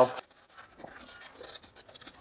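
Faint rubbing and scratching of paper towel wiping gear oil from around the transfer case fill plug.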